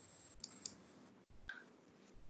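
Near silence with a few faint clicks.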